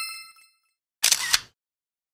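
Editing sound effects: a bright chime ringing out and fading, then about a second in a camera-shutter click lasting about half a second.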